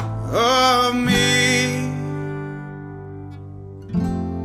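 Live acoustic music: acoustic guitar and Yamaha electric piano. Just after the start a wordless voice slides up into a held, wavering note, then the chord rings on and slowly fades.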